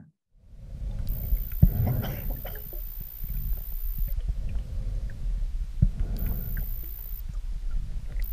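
Underwater sound of a scuba dive beneath lake ice: a low, muffled rumble with scattered knocks and clicks, two sharper knocks about a second and a half in and near six seconds. A faint, very high whine comes and goes.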